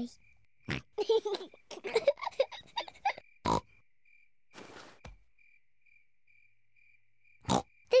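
Children giggling, with a few soft thumps. Then the quiet bedroom at night, where a cricket chirps faintly and evenly about three times a second.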